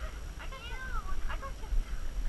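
A faint, high-pitched voice giving a short whine that rises and falls in pitch, over low rumble on the microphone.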